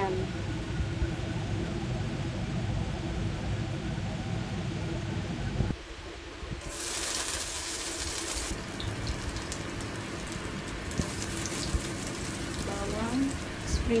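A pot of soup bubbling at the boil with a low steady rumble. Then, about six seconds in, julienned ginger sizzles in hot oil in a wok as it is sautéed, with a spatula stirring through it.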